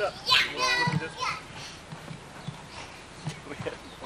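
A young child's high-pitched voice calling out in the first second or so of play, then quieter, with a few soft knocks.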